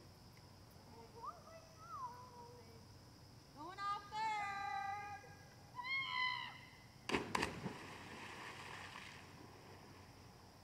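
Children shouting from a lake diving tower, two drawn-out calls, then a splash as they hit the water about seven seconds in, followed by a couple of seconds of churning water.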